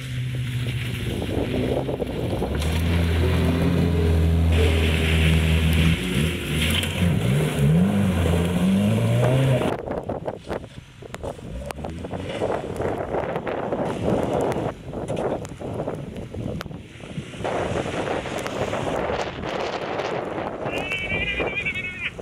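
Volvo P1800's four-cylinder engine running under load on a muddy track, its pitch rising and falling as it revs through the corner. After a cut about ten seconds in, a car engine labours with rough, crackling noise as an Opel Manta struggles in deep mud, with voices of people pushing it out near the end.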